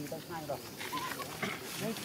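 Young macaques giving short, squeaky calls: a few quick rising squeaks and chirps, with one brief flat note about a second in.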